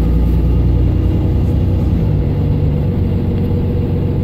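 Mercedes-Benz Citaro O530 LE bus's 12-litre OM457hLA six-cylinder diesel engine, heard from inside the passenger cabin, running loud and steady. About halfway through, its note steps down in pitch.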